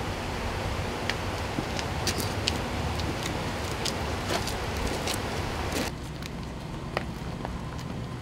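Steady outdoor background noise, a low rumble under a hiss, with a few scattered light clicks; the hiss drops away suddenly about six seconds in.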